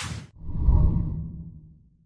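Intro logo sound effect: a short swoosh, then a low rumble that swells and fades out over about a second and a half.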